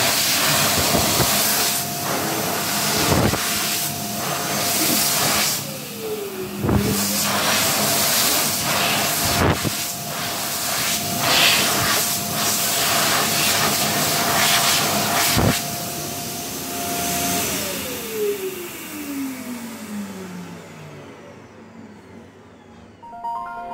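PHS Airstream Pure hand dryer running, a rush of air over a steady motor whine. About six seconds in, the whine dips in pitch and climbs back. Near the end the motor winds down, its whine falling steadily in pitch as the airflow fades.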